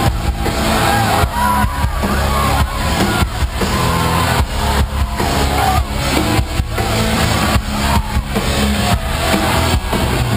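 Live rock music from a full band played loud: drum kit keeping a steady beat under bass and distorted guitars, recorded from within the crowd.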